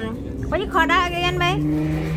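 Conversational speech over a steady low hum, which grows louder in the second half.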